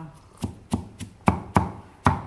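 Kitchen knife chopping white vegetable pieces on a round wooden chopping block: about five sharp chops, unevenly spaced.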